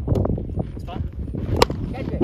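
A cricket bat strikes the ball once, a single sharp crack about one and a half seconds in. It sits over the murmur of spectators' voices.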